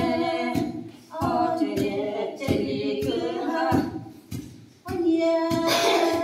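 Women singing a Sumi Naga folk song unaccompanied, in phrases with short breaks. Long wooden pestles knock into a wooden mortar in rhythm under the song, about once or twice a second.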